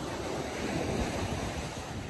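Steady wash of ocean surf on a beach, with wind rumbling on the microphone.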